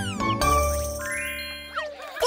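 Cartoon sound effects over children's music: a bright ding that rings on and fades, then a rising run of twinkling, jingling tones for a dizzy, seeing-stars gag.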